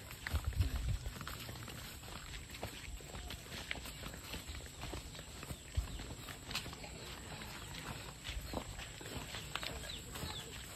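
Footsteps of several people walking on a dirt path, with scattered light scuffs and clicks and a few low thumps, the strongest about half a second in.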